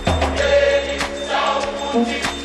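Slowed-down tropical house track: sustained chords with chant-like layered vocals over a deep bass note, with a single beat at the start.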